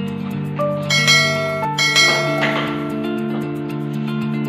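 Background music with a bell-like chime struck twice, about a second apart, ringing out over the steady accompaniment.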